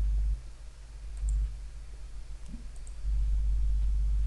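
A few faint computer-mouse clicks over a steady low electrical hum.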